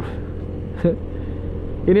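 Motorcycle engine running at a steady, even pitch as the bike rides along the road.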